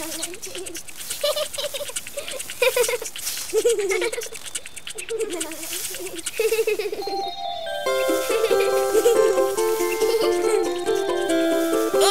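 Cartoon leaf-raking effect: a rake scratching and rustling through dry leaves in quick repeated strokes, mixed with a small character's wordless giggling voice. About eight seconds in, a light plucked-string tune starts.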